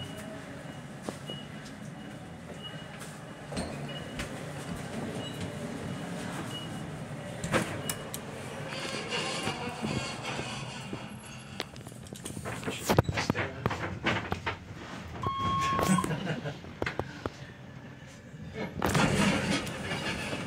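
Dover traction elevator in use: a faint high beep repeats about every three-quarters of a second for the first seven seconds or so, over the low running noise of the car. Clicks and knocks follow, and a single short chime tone sounds about fifteen seconds in.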